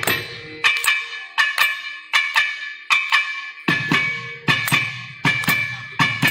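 Thavil, the South Indian barrel drum, played solo: sharp, ringing strokes in a quick rhythmic pattern, falling mostly in pairs. The deep bass strokes drop out just after the start and come back about two-thirds of the way through.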